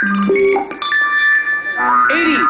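Game-show board-roll sound cue: short electronic tones stepping upward in pitch, then high tones held for about a second. A new musical sting begins near the end.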